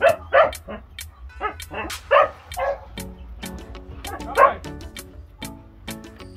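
Pit bull puppies and young dogs playing, giving several short yips and barks; the loudest comes a little past four seconds in. Background music with a beat plays throughout.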